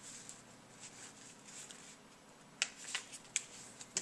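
A sheet of printer paper being folded in half and its crease pressed flat by hand: faint rustling, then a few sharp crackles of the paper in the last second and a half.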